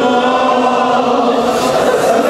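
A man's voice chanting in a long, held melodic line through microphones, the pitch sustained with only slight bends.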